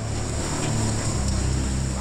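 Hurricane-force wind and driving rain, a steady hiss with a heavy low rumble from gusts buffeting the microphone.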